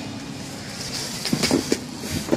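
Steady low background rumble, with a few short knocks and rustles from a cardboard parcel and letter being handled about a second and a half in.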